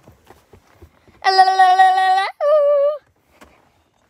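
A child's voice sings out two loud notes, a held, steady 'ahh' of about a second followed by a shorter, wavering one that falls slightly.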